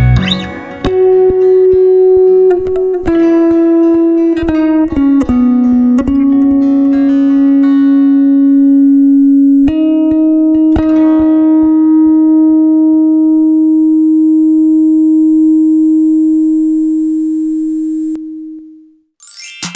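Song's outro with an electric bass guitar played high up the neck: a run of short plucked notes, then one long note held from about ten seconds in, ringing on and fading away at the end.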